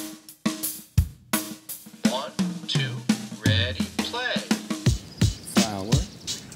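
Rap-style backing track: a drum-kit beat of kick, snare and hi-hat in a steady rhythm, with swooping pitched sounds over it.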